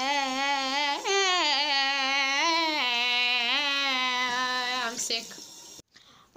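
A girl's voice singing a long wordless held note with vibrato, swooping up in pitch briefly twice before settling back, and stopping about five seconds in.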